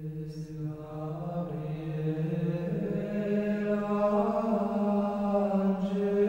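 Plainchant sung in a single slow melodic line of long held notes. It fades in and grows louder, and the pitch steps up once about three seconds in.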